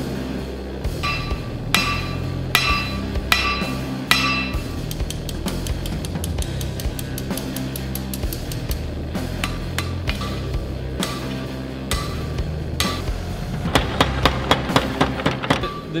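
Hand hammer striking a glowing steel knife blade on an anvil, each blow ringing briefly. The blows are spaced out at first, then come in a fast run of about four a second near the end, under background music.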